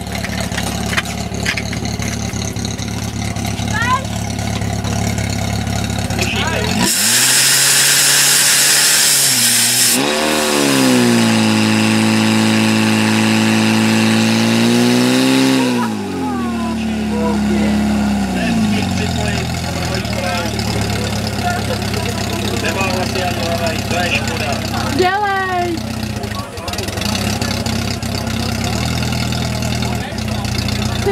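Portable fire pump engine running steadily, then revved hard about seven seconds in with a loud rushing hiss for about three seconds, held at high revs until about sixteen seconds, then falling in pitch to a lower steady run. Voices shout over it throughout.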